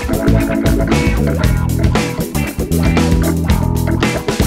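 Funk rock guitar backing track in E minor: electric bass, drums and rhythm guitar playing a groove over a chart built on E7#9, with the lead part left out for a guitarist to play over.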